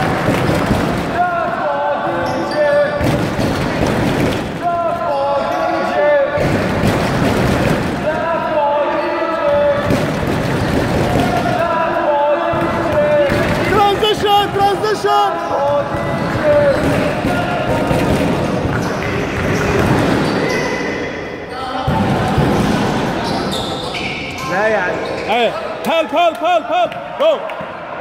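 A basketball dribbled on an indoor gym court, bouncing again and again, with voices through most of it. Near the end comes a run of quick, even bounces.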